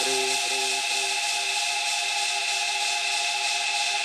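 Electronic music from a DJ mix with the beat gone. A few repeating notes fade out over the first second, leaving a steady hissing noise wash under several held drone tones.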